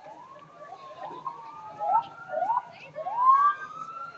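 A vehicle siren giving short rising whoops, several sweeping up over one another, with the loudest and longest rise about three seconds in.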